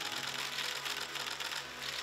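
Many camera shutters firing rapidly and overlapping, a continuous patter of clicks from a press pack shooting at once, over a faint low hum.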